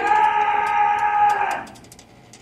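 One sustained pitched note held for about one and a half seconds, dipping slightly in pitch at its start and then holding steady before cutting off, with light clicks over it.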